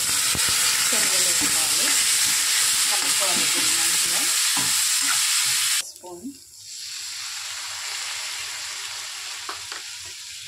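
Boiled brown chickpeas hitting hot oil in a steel kadai, sizzling loudly as they are stirred with a ladle. The sizzle cuts off suddenly near six seconds, and a quieter, steady sizzle of frying returns a second later.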